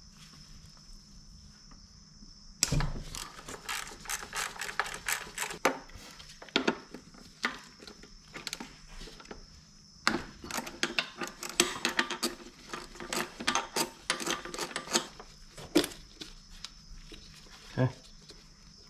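Hand ratchet clicking in quick runs as a bolt is backed out, starting about two and a half seconds in, with a second long run in the back half.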